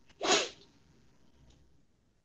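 A single short, sharp burst of a person's breath noise a moment after the start, lasting about a third of a second.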